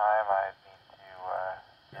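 A person's voice coming over the Wouxun KG-UV6X handheld's speaker from a repeater transmission. It sounds thin and band-limited, in two short phrases about a second apart.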